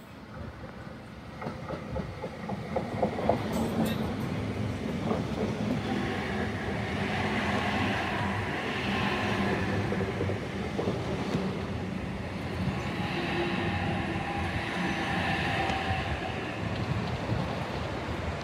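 NSW TrainLink Oscar (H set) double-deck electric train running past close by. A run of sharp clicks from the wheels comes in the first few seconds, then steady running noise with a faint whine that rises and falls.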